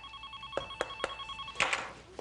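A classroom telephone ringing with an electronic ring: several steady high tones in a fast trill. The ring stops about a second and a half in and is followed by a short burst of noise. The call is from the school office.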